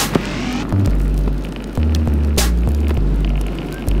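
Background music with a deep bass line that steps from note to note every half second or so, with a few sharp clicks. Under it, the rolling rumble of a penny board's small plastic wheels on tarmac.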